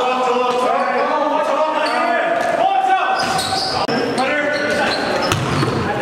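Basketball dribbled on a gym floor during play, with players' voices echoing in a large hall; a short break about four seconds in where the footage cuts.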